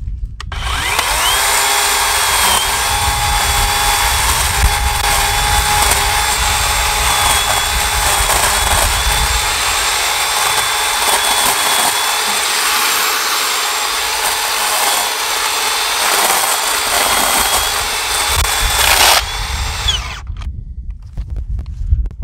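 WORX 40V battery electric chainsaw motor spinning up with a rising whine and running steadily while the chain cuts into thin dry brush, its pitch dipping now and then as it bites. It cuts out about nineteen seconds in, when the chain comes off the bar; the owner thinks it hit something.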